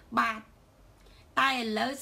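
A woman speaking: a short syllable, a pause of about a second, then a longer phrase.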